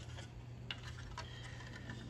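Faint handling of plastic model-kit hull parts: a few light clicks and rubs as a one-piece lower hull tub is turned over in the hands, over a steady low hum.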